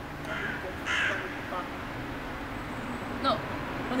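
A crow cawing near the start, a short harsh call about a second in, during a pause in a woman's speech.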